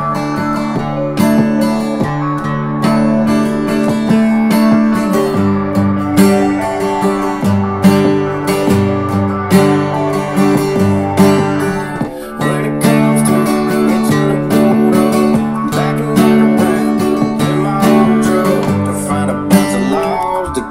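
Acoustic guitar strummed steadily, going back and forth between a D chord, its high E string left open, and a G chord, with the bass note hit on each chord.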